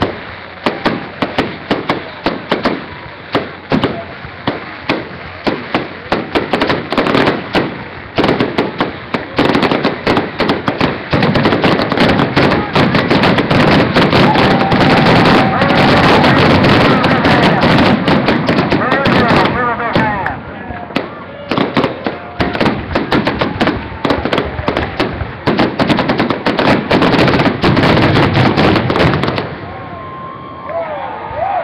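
Aerial fireworks going off in a rapid barrage: many overlapping bangs and crackles. The bangs come separately at first, merge into an almost continuous loud barrage for about ten seconds in the middle, then go on more sparsely and stop just before the end.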